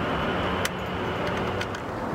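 Steady background noise of road traffic, with one light click about two-thirds of a second in.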